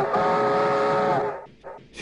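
Steam locomotive whistle blowing one long blast, several steady tones sounding together like a chord, dying away about a second and a half in.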